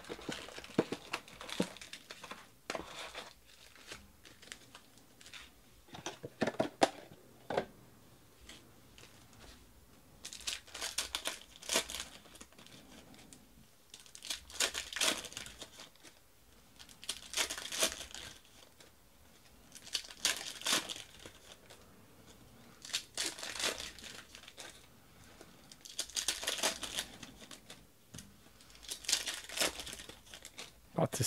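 Plastic trading-card pack wrappers being torn open and crinkled by hand. The first third is lighter rustling and taps. Then come loud bursts of crinkling about every three seconds as pack after pack is ripped open.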